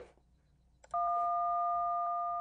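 DTMF touch-tone for the digit 1, the 697 Hz and 1209 Hz tones sounding together, played from a computer. It starts just under a second in after a short hush and holds steady.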